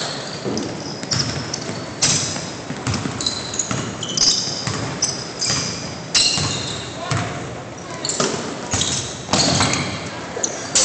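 Sounds of a basketball game in a gym: sneakers squeaking and feet pounding on the hardwood court, the ball bouncing, and players' voices, all echoing in the large hall.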